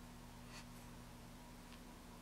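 Faint, light scratching and rubbing of fingers working a small head of soft modelling clay, a couple of brief strokes, over a steady low hum.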